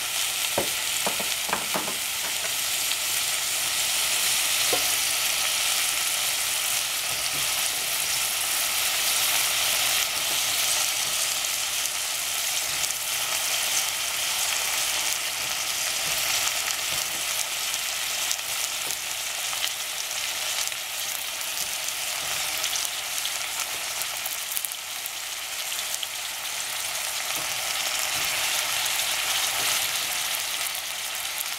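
Cut zucchini and yellow squash sizzling steadily in a stainless steel pot over a lit gas burner. There are a few light clicks in the first two seconds and one more around five seconds, as a knife or squash pieces drop against the pot.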